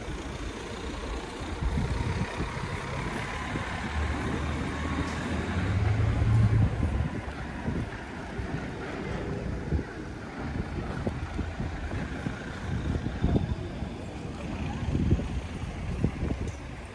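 Small street-cleaning truck's engine passing, a low drone that is loudest about six seconds in.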